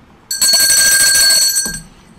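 A bell-like ring with several high steady tones over a noisy wash, starting a moment in and lasting about a second and a half.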